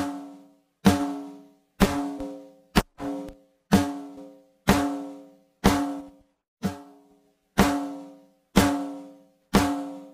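A looped snare drum recording plays back through a Warm Audio WA273-EQ (Neve 1073-style) preamp/EQ, about one hit a second with a few quick extra hits between. Each hit rings with a pitched tone and decays. The preamp's input gain is being turned up toward saturation and distortion, which shaves off some of the transients.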